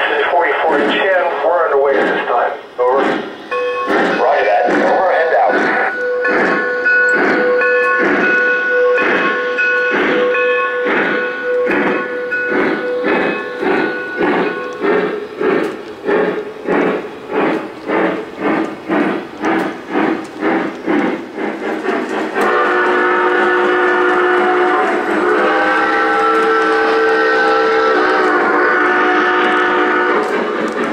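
Lionel Southern Pacific GS-2 4410 model steam locomotive's onboard sound system playing steam chuffing at about two chuffs a second as the train runs. Its whistle sounds a long chord from about 4 s in, and a second, shifting whistle chord near the end.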